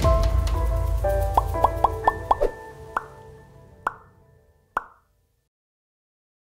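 Short animated-logo jingle: a low swell under held tones, then a quick run of short plucked notes and three single sharp pings, fading out and ending about five seconds in.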